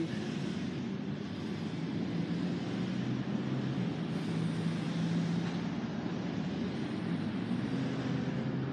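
Steady distant engine rumble with a faint low hum, even in level throughout.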